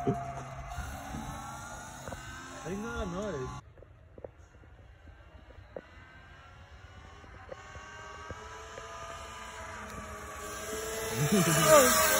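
Sur-Ron electric dirt bike's motor whining as it rides along the street, growing louder as the bike comes close near the end. Short bursts of voices come in around the middle and near the end.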